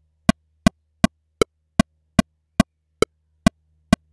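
Pro Tools metronome click track playing through a gradual tempo ramp from 160 down to 120 BPM. The sharp clicks start at nearly three a second and spread out steadily until they come about two a second.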